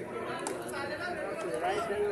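Several voices talking over one another: general chatter of players and spectators, with no single speaker standing out.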